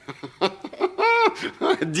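A short high-pitched voice sound, rising then falling in pitch, about a second in, then a man's voice begins speaking near the end.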